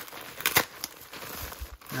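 Bubble wrap and plastic packaging crinkling as hands unwrap a parcel, with a few sharper crackles about half a second in.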